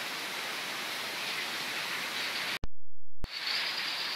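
Steady outdoor rushing hiss with no clear single source, broken just past halfway by an edit glitch: a click, about half a second of low hum, and another click. After the break the hiss returns with a steady high-pitched tone over it.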